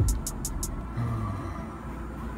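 A drum beat of deep kick drums and fast hi-hat ticks, which stops less than a second in and leaves a low rumble.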